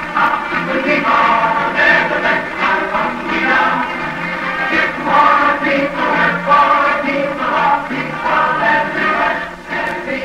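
A choir singing, many voices together, steady throughout.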